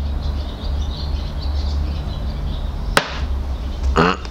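A steady low rumble, with one sharp click about three seconds in.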